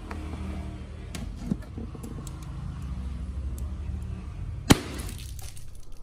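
Rubber balloon pierced with a needle through a patch of clear tape without bursting: small creaking ticks of stretched rubber and tape over a low rumble of handling, with one sharp click a little before the end.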